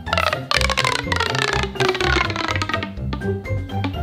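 Background music with a repeating bass line, over which a pitched sound slides slowly down in pitch during the first couple of seconds.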